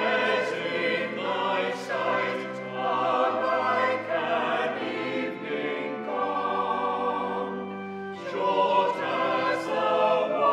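Church choir singing a slow piece in sustained chords over held bass notes, the harmony shifting every few seconds. There is a brief softer moment about eight seconds in.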